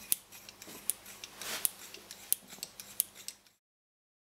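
Small steel hand-plane parts handled on a workbench: a string of sharp metal clicks and short scrapes, with a longer scrape about one and a half seconds in. The sound cuts off suddenly a little past three seconds in.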